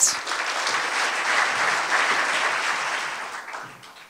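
Audience applauding, starting all at once and dying away near the end.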